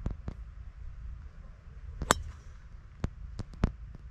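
A golf driver striking a teed ball: one sharp crack with a brief ring about two seconds in, followed by a few fainter clicks, over a low wind rumble on the microphone.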